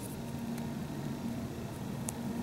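Steady low room hum with faint handling noise and a light click about half a second in, as a small hard-plastic Schleich lamb figurine is turned over between the fingers.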